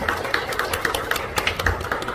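Audience applauding: many hands clapping in a quick, even patter.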